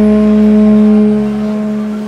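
A loud, steady drone held on one low pitch with clear overtones, easing off slightly near the end.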